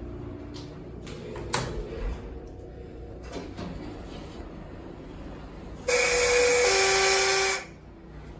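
Schindler 321 elevator's arrival signal, a loud electronic tone held about a second and a half that steps from one pitch down to a lower one, sounds near the end as the car's down lantern lights. Before it come a low hum and a few light clicks and thumps as the car stops and the doors open.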